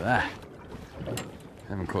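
Sea water lapping against the hull of a small fishing boat, with light wind and a single sharp click about a second in.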